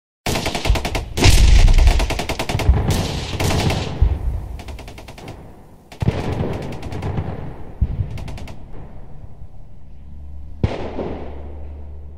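Rapid-fire gunshot sound effects: a long volley of fast shots starting just after a moment of silence, a second volley about six seconds in, then a few single heavy shots near the end over a low hum.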